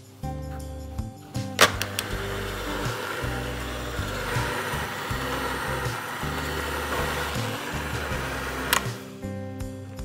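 Electric hand mixer with dough hooks kneading a stiff, sticky gluten-free psyllium dough in a glass bowl. It switches on with a click about one and a half seconds in, runs steadily, and clicks off near the end. Background music plays underneath.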